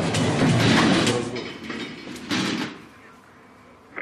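Door of a centrifuge capsule sliding and rumbling shut. A long sliding noise fades out by about a second and a half, and a shorter second one follows about two and a half seconds in.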